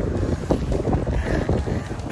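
Wind buffeting a handheld phone's microphone while walking: a loud, low rumble with irregular knocks.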